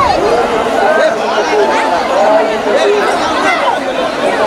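A dense crowd of many voices talking and calling out at once, a steady overlapping babble with no single speaker standing out.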